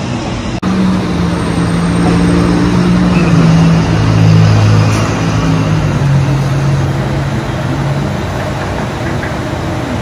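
Street traffic: a heavy vehicle's engine drones past for several seconds, its pitch falling slowly, over a steady wash of road noise.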